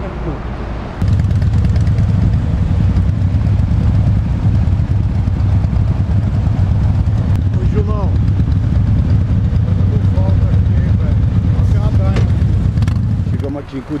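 Harley-Davidson Heritage motorcycle riding at highway speed, its engine heard under a steady low rumble of wind on the microphone. The rumble starts abruptly about a second in and stops shortly before the end.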